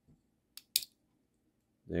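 A few light clicks, the sharpest a quick pair just under a second in, as a fingernail works open the hinged hood of a 1:64 scale Greenlight die-cast car.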